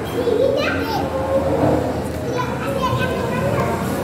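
Indistinct chatter with children's high-pitched voices calling and talking, mixed with other people talking.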